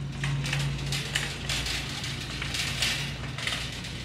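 Rustling and brushing noise, a series of soft swishes, over a steady low hum.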